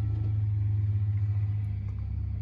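Steady low engine hum of the Horsch Leeb sprayer running at idle, heard inside its cab.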